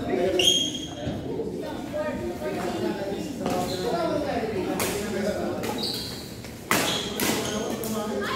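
Badminton rally: a few sharp racket strikes on the shuttlecock over indistinct chatter in a large hall.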